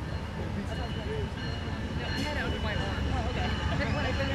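Indistinct voices of people talking over a steady low rumble, with a thin steady high tone starting about a second in.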